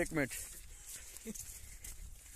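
A brief, faint animal call a little over a second in, over faint outdoor noise.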